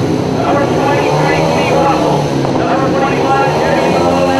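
Several speedway motorcycles' single-cylinder methanol engines running and being revved, their pitch rising and falling.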